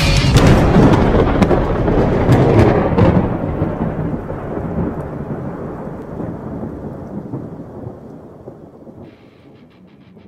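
Thunder rumbling with rain, loud at first with a crackling patter and then fading away slowly over about nine seconds.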